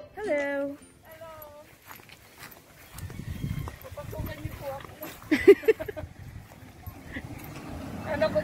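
Voices calling out and talking: two drawn-out, gliding calls in the first second and a half, then faint talk over a low rumble from about three seconds in, with a loud short call about five and a half seconds in.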